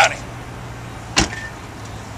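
A patrol car's rear door slammed shut once, a single sharp knock about a second in, over a steady low hum.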